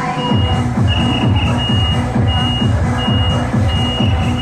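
Loud electronic dance music with a heavy pulsing bass, from a procession float truck's sound system, kicks in about half a second in. Through it runs a high electronic beep that repeats about every two-thirds of a second.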